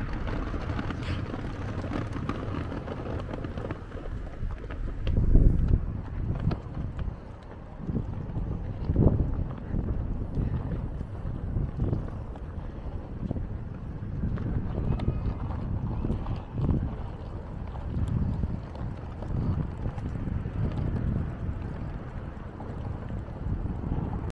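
Wind buffeting the microphone in gusts, a low rumble that swells loudest about five and nine seconds in.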